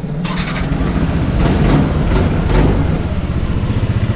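Yamaha NMAX scooter's single-cylinder four-stroke engine being started with the electric starter and then running. It starts now that the blown fuse behind its no-power fault has been replaced.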